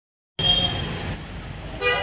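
Vehicle horns honking over a low traffic rumble: a held honk shortly after the sound begins, and a second short honk near the end.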